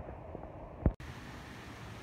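A single low thump of a handheld camera being knocked or handled, then an abrupt cut to a steady low hiss of background noise.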